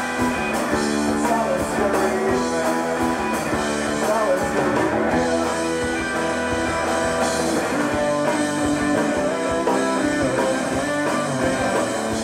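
Live rock band playing: electric guitars over a steady beat.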